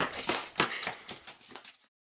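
Quick running footsteps of shoes on a hard paved surface, about five steps a second, fading and then cutting off suddenly near the end.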